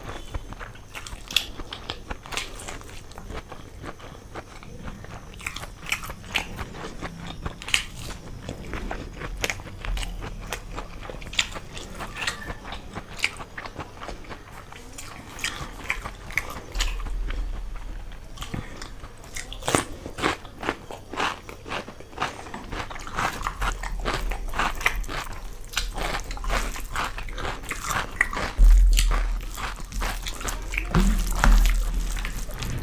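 Close-miked chewing and crunching of a meal of spicy khichdi, fried cauliflower fritters (gobi pakoda) and cucumber eaten by hand: many short, irregular crunches and mouth clicks, coming thicker and louder in the second half.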